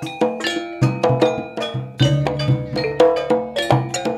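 Javanese gamelan playing: bonang kettle gongs struck in a quick, steady pattern of ringing metallic notes, with deep kendang drum strokes underneath.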